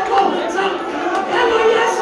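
Many women's voices praying aloud at once, overlapping and unbroken, in a large reverberant hall.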